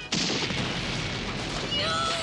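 A loud shotgun blast just after the start cuts off the music and is followed by a continuing noisy rush and rumble. A voice shouts near the end.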